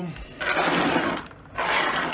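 Two rough scraping, rubbing noises of about a second each, from something being slid or rubbed across the workbench top by hand.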